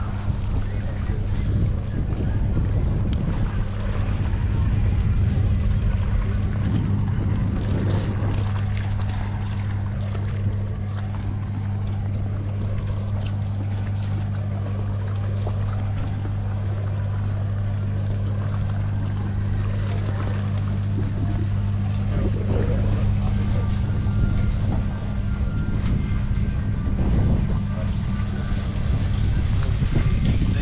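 A boat's engine running with a steady low hum, with wind and water noise around it.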